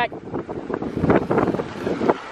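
Wind buffeting the microphone: an irregular, gusty rumble.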